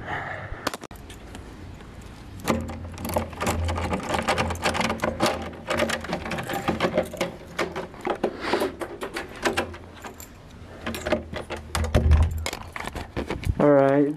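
Handling noise from a camera being moved about by hand: a busy run of rustling, clicks and small knocks with a low rumble. It starts a couple of seconds in and runs until just before the end.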